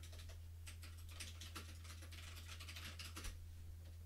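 Faint, quick scratchy ticks from a computer pointing device being worked by hand as brush strokes are painted onto a layer mask, over a steady low electrical hum.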